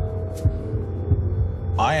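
Heartbeat sound effect in a film soundtrack: a few low thuds over a steady low drone. A man's narrating voice comes in near the end.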